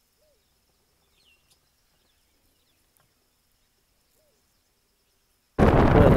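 Near silence outdoors with a few faint, short bird calls and a faint steady high tone. Near the end it cuts suddenly to loud wind noise buffeting the microphone from a moving open-roof safari vehicle.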